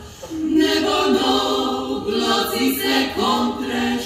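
Klapa singing: a Dalmatian a cappella vocal group singing held notes in close harmony, taking a short breath at the start before the next phrase.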